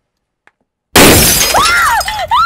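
Near silence, then about a second in a sudden loud crash of shattering glass, followed by high rising-and-falling cries from a woman.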